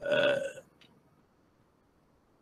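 A man's voice: one short drawn-out vowel sound of about half a second, like a spoken hesitation, then near silence.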